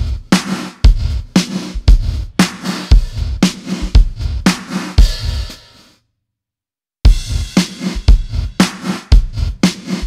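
Funky drum-machine groove of kick, snare and hi-hat played through the 80s Spaces reverb plugin with its gate set to the tempo, so each hit's reverb is cut short; the strong beats come about twice a second. A little before six seconds in it fades away to a second of dead silence, then the groove starts again abruptly.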